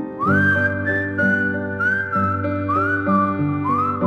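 A whistled melody over piano chords, with no singing; each phrase slides up into its note, about four phrases in the four seconds.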